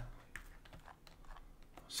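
Faint, irregular clicking of a computer keyboard and mouse, a few scattered taps.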